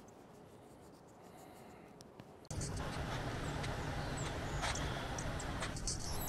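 Very faint room tone, then outdoor ambience that starts abruptly about two and a half seconds in: a steady rustling noise with a few short, high chirps from small birds.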